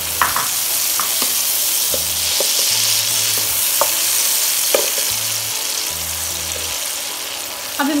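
Cauliflower florets and sausage slices sizzling in melted butter in a non-stick frying pan, a steady hiss, while a wooden spatula stirs them with scattered scrapes and taps against the pan.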